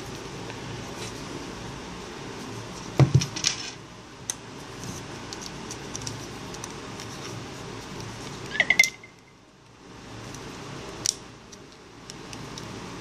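Plastic clicks and snaps of a mobile phone being handled and pressed together, with a sharp cluster of clicks about three seconds in and single clicks later. A short high chirp with clicks comes just before nine seconds.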